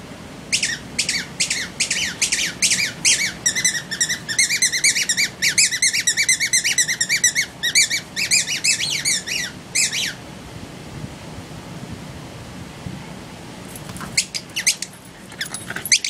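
A small bird chirping: a rapid run of quick high notes that starts about half a second in, grows denser in the middle and stops about ten seconds in.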